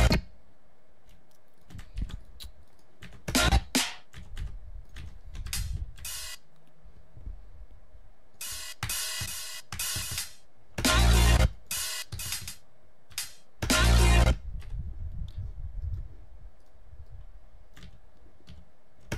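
Programmed electronic drums, snare, hi-hat and cymbal hits with a heavy low thump, played back in short, irregular snippets with pauses between, as a snare fill is being worked out in a music production program.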